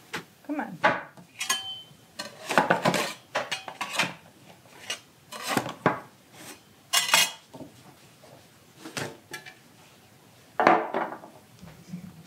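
A knife scraping along the inside of a metal loaf pan to loosen a baked loaf of bread, among irregular clanks and knocks of the pan being handled, tipped and set down. The loudest knocks come about 7 s and 11 s in, and one brief metallic ring sounds near the start.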